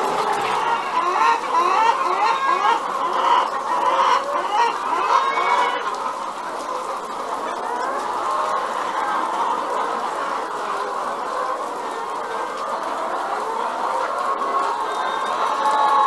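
A large flock of caged laying hens clucking and calling all at once, many overlapping short calls forming a dense, continuous chorus. It is busier and louder for the first six seconds or so, then settles to a steadier murmur of calls.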